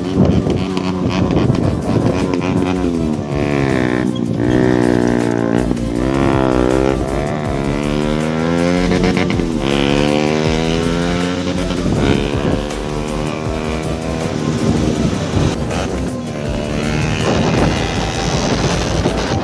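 Motorcycle engine running on the open road, its pitch rising and falling repeatedly over several seconds at a time as it revs and changes speed, over background music.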